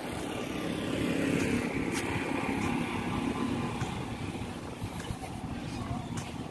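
A motor vehicle passing on a nearby road, its engine swelling to loudest about a second and a half in and then slowly fading.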